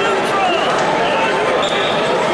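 Arena crowd: many voices shouting and calling out at once over a steady hubbub, carrying in a large hall.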